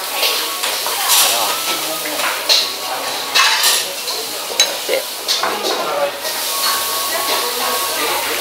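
Restaurant dining-room noise: background voices over a steady hiss, with occasional clinks of tableware.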